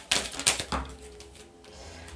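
A deck of oracle cards being shuffled by hand: a quick run of crisp card clicks, then quieter.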